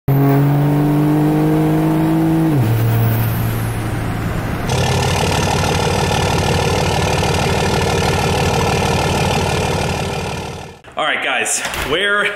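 Pickup truck's diesel engine heard from inside the cab while driving, a steady drone that drops to a lower pitch a little over two seconds in as the revs fall. After a cut about five seconds in, a different dense, steady sound runs for about six seconds, then cuts off just before a man starts talking.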